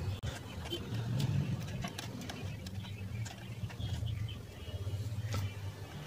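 Faint small clicks and taps of a screwdriver and wire being handled at a controller's screw-terminal block, over a low, uneven background hum.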